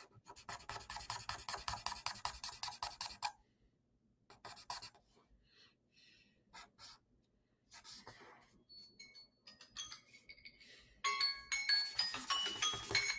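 Pen scratching on paper in quick, rapid strokes for about three seconds, then a few scattered strokes. Near the end a phone timer alarm starts playing a chiming tune, marking the end of the timed drawing exercise.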